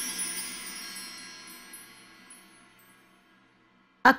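Wind-chime tones in a background music cue: many high ringing notes that fade steadily away to near silence near the end.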